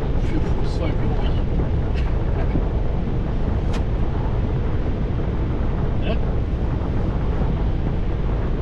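Steady rumble of road and wind noise inside a vehicle cab at motorway speed, with a few brief ticks or rattles scattered through.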